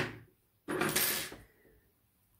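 Small scissors snipping crochet thread once, a short sharp click at the start. About a second later comes a louder hiss lasting under a second.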